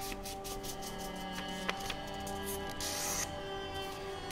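Soft background music of steady, sustained tones, with a faint rustle of paper being folded by hand about three seconds in.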